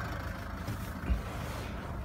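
The 2.2-litre diesel engine of a 2010 Land Rover Freelander SD4 idling steadily, heard from inside the cabin, with handling rustle and a single low thump about a second in as the camera is moved.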